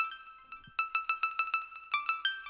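A synth pluck sound playing a fast run of short, bright plucked notes, each dying away quickly, with a brief pause about half a second in.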